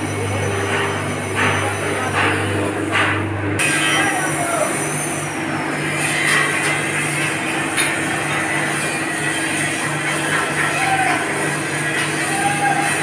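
Steady machine noise from a drum roaster running: a continuous electric-motor hum under a rushing, rattling churn. The hum changes pitch abruptly about three and a half seconds in.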